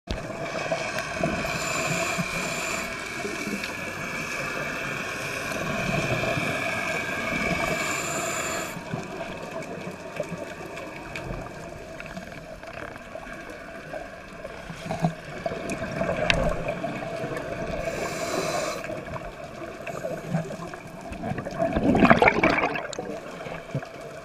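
Scuba diver breathing through a regulator, heard underwater through a camera housing: a steady muffled water noise with a hiss during the first third, and a loud gush of exhaled bubbles near the end.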